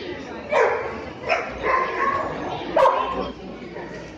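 A dog barking three times in short, sharp barks, spaced about a second apart; the last bark, near three seconds in, is the loudest.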